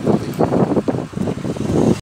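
Wind buffeting the microphone in rough, uneven gusts, over men talking.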